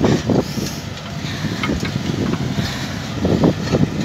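Zetor Major CL 80 tractor's 80-horsepower diesel engine running steadily under load while pulling a seed drill through the soil.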